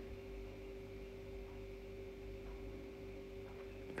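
Faint steady hum with a constant low tone, unchanging throughout: background hum in a car cabin.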